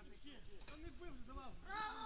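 Faint voices of footballers calling out during play: short rising-and-falling calls, a little louder near the end.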